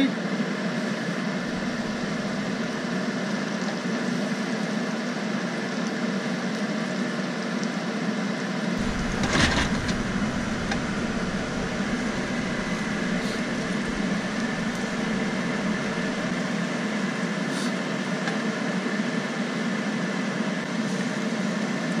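Eggs and scallops frying in a wok, a steady hiss under a constant hum. A spatula scrapes the pan once about nine seconds in, with a few light clicks later.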